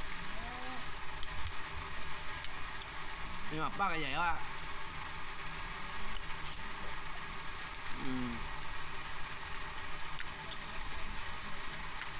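A man's voice in three short utterances, one of them a brief hum, over a steady background hiss and low rumble.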